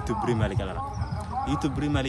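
A man's voice speaking, with repeated short low thumps underneath.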